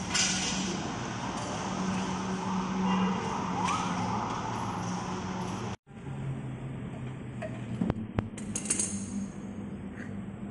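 Workshop background with a steady low machine hum. After an abrupt cut about halfway, a few sharp metallic clinks from tools and wheel parts as a car's wheels are being fitted.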